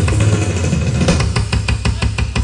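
Acoustic drum kit played solo: a dense low rumble of drums with bass drum underneath, breaking about halfway into a fast run of sharp strokes, about ten a second.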